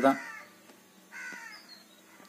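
A crow cawing once, a short harsh call of about half a second, about a second in.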